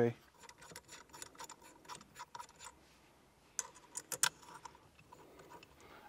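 Light metallic clicks and taps of small parts being handled: bolts and the metal plates of a steering-wheel quick-release hub adapter being set in place and started by hand. The clicks come in quick, irregular runs through the first few seconds, with another short cluster about four seconds in.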